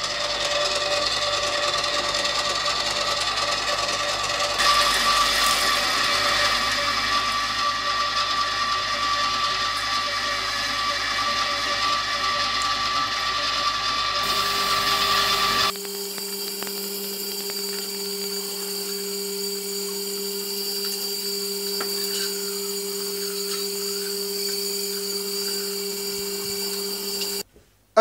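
Trespade electric meat mincer running steadily, its motor humming as it grinds pig's offal through a coarse plate. The pitch of the hum shifts abruptly about two-thirds of the way through, and the motor stops just before the end.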